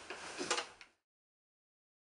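A brief vocal sound with a click about half a second in, fading out within the first second, then dead digital silence as the audio cuts off.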